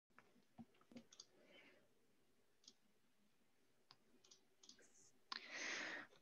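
Near silence with a few faint, scattered clicks, then a soft hiss in the last second.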